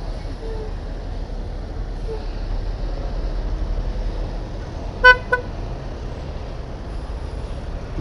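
Steady running noise of a motorcycle moving slowly through traffic. About five seconds in, a vehicle horn gives two quick toots, the first louder than the second.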